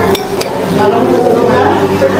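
Cutlery clinking against dishes while eating, with two sharp clinks in the first half-second.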